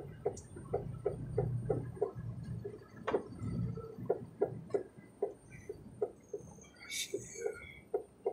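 Car's turn-signal indicator clicking steadily, about three ticks a second, over the low hum of the engine and road while signalling a merge into the left lane.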